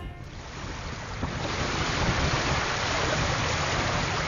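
Sea waves breaking and washing onto a sandy beach, fading in over the first two seconds, then steady.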